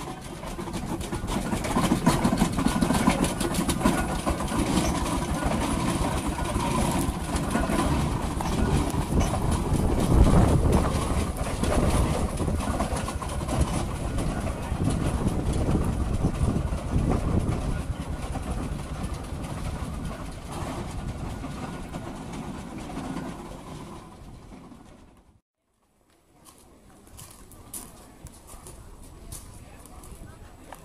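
Steam roller driving along, its steam engine running with a dense, rapid clatter that is loudest about ten seconds in. The sound cuts off suddenly near the end.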